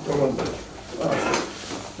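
A man's voice speaking indistinctly in short phrases in a small room.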